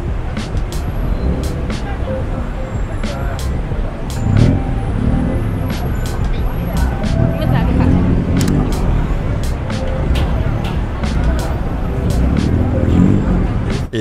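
Busy street traffic at night: cars running past in a steady low rumble, with passers-by talking and scattered sharp clicks.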